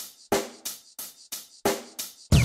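Intro music sting: a drum kit playing about six sharp, evenly spaced hits, roughly three a second.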